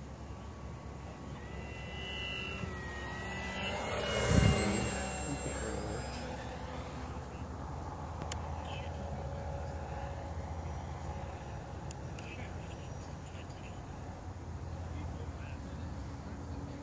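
Radio-controlled model airplane making a low pass: its motor grows louder with rising pitch, is loudest about four seconds in, then drops in pitch as it flies away and settles to a steady distant hum.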